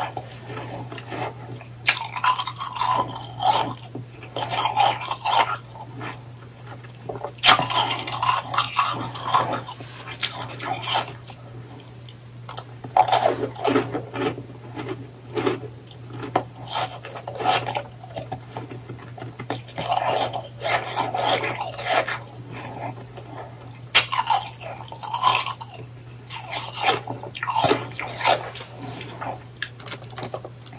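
Close-miked chewing of powdery ice: dense crunching that comes in bouts of a second or three, with short pauses between them.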